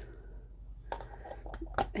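A few small clicks of a plastic lid being pressed onto a paint cup, in the second half, over a steady low hum.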